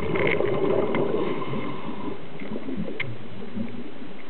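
Scuba diver exhaling through a regulator underwater: a gush of bubbling and gurgling for about two seconds, then fading to scattered small pops and clicks.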